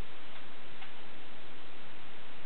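Plastic wrapping crinkling and rustling as it is pulled off a guitar: a dense, steady crackle with a couple of sharper clicks.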